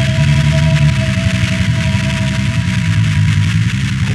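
Power electronics noise: a loud, steady low drone under a dense harsh hiss, with two thin held tones that fade out near the end.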